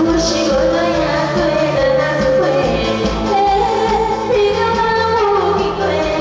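A woman singing a pop song into an amplified microphone over a backing band track with a steady beat, holding one long note through the second half.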